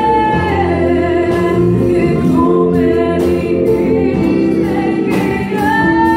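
Live gospel worship music: a woman sings lead into a microphone over a band of keyboard, electric guitar and drums, played through a PA, with a steady cymbal beat.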